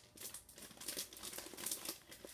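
Faint, irregular crinkling and rustling of a clear plastic sleeve and cardstock being handled.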